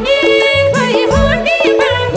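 Nepali dohori folk song performed live: a chorus of women sings an ornamented melody with gliding notes over keyboard and madal drum accompaniment.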